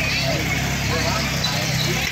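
Fairground din: people talking over a steady low machine hum.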